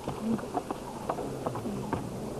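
Irregular light knocks and clicks of people scrambling over dry, stony ground, with brief faint voices.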